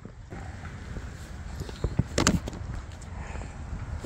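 Wind rumbling on the microphone outdoors, with a few small clicks and one short, sharp knock a little past two seconds in.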